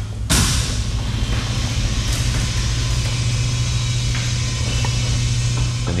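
A steady, loud rumble with a low hum under a broad hiss. The hiss comes in suddenly just after the start and then holds steady.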